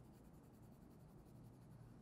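Near silence, with the faint scratch of a colored pencil lightly shading on paper.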